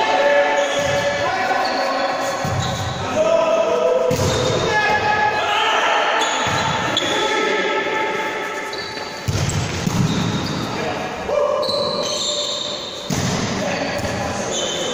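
Indoor volleyball rally in a large echoing sports hall: the ball is struck a few times with sharp hits, and players call out to each other. Short high squeaks come from shoes on the hall floor.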